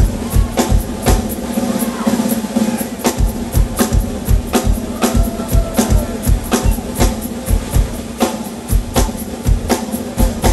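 Live drum kit played hard: rapid kick-drum beats, about four a second, with snare and cymbal strokes over a steady held low note.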